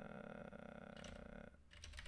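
Computer keyboard keystrokes as a terminal command is typed, a few quick, faint clicks, clearest near the end.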